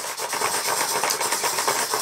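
Four small RC servos whirring and chattering together as they are jerked rapidly back and forth from the radio sticks, a steady high-pitched gear-motor buzz. The spiking current draw on the tester's graph marks them working under load.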